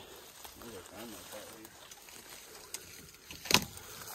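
Faint rustling of brush and branches as someone pushes through thick undergrowth on foot, with a few small ticks and one sharp snap, the loudest sound, about three and a half seconds in.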